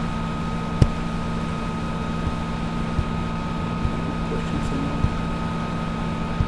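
Steady electrical hum and hiss of a recording's background noise, with a thin high tone running through it. A few soft clicks, the sharpest about a second in, fit a mouse click on a dialog button.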